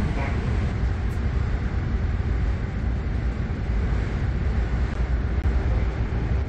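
Airport express train running steadily, heard from inside the carriage: a low, even rumble with a faint steady hum.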